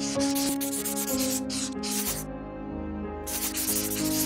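Marker scribbling on a whiteboard in quick scratchy strokes, stopping for about a second midway and starting again near the end, over background music with sustained notes.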